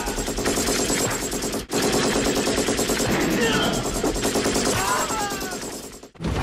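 Movie-soundtrack automatic gunfire: rapid, continuous bursts of shots with men's shouts over them. The fire breaks briefly at an edit just under two seconds in, then carries on.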